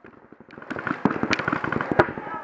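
Paintball markers firing across the field: a dense, irregular run of sharp pops that starts about half a second in.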